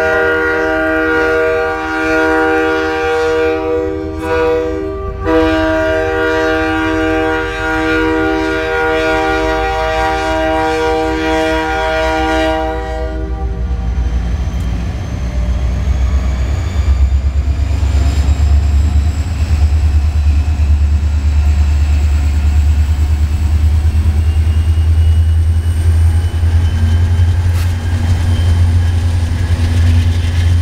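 Canadian Pacific diesel freight locomotives sounding a multi-note air horn at a road crossing: a long blast of about five seconds, a brief break, then a second long blast of about eight seconds. The lead locomotives then pass close by with a loud, steady low diesel rumble and a faint rising high whine.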